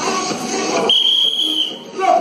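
Music that cuts out about a second in, replaced by one long, steady high-pitched signal tone lasting just under a second.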